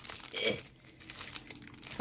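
Clear plastic packaging bag crinkling as it is pulled and peeled open by hand, with a short strained grunt about half a second in.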